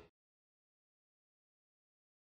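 Complete silence, a blank soundtrack, after the last trace of music fades out at the very start.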